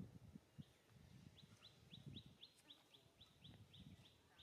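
Faint bird call in the background: a quick, even series of short rising chirps, about four a second, starting about a second in, over near silence with a few soft low rustles.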